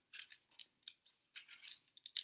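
Vegetable peeler blade scraping the skin off a green apple in a quick series of short, faint strokes.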